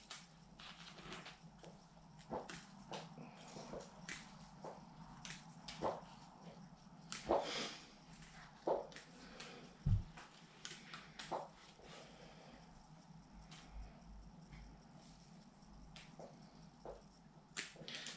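Small bonsai scissors snipping the leaves off a lemon tree, leaving the petioles on, with light leaf rustling: faint, irregular sharp clicks a second or so apart.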